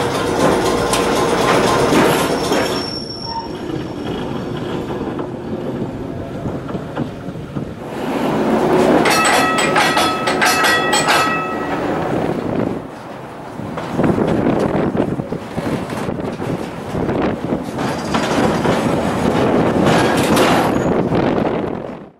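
Streetcar running on rails with a steady rumble. About nine to eleven seconds in, the wheels squeal high and clatter over the track, as on a curve.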